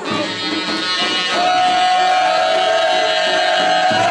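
Live Greek folk dance music played by a wedding band, with one long held note from about a second and a half in.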